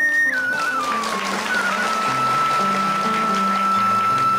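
Music: a flute plays a slow melody. A third of a second in it steps down from a high held note with small ornamental turns, then holds a long steady note, over low sustained accompaniment notes.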